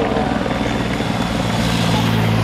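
Helicopter rotor chopping steadily overhead. A motorcycle's engine grows louder as it comes up and passes close near the end.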